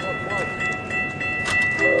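Railroad crossing bell ringing steadily with repeated strikes, and just before the end a train's air horn chord starts up, loud and steady.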